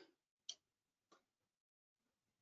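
A computer mouse button clicking once, short and sharp, about half a second in, then a much fainter click a little after a second, over near silence.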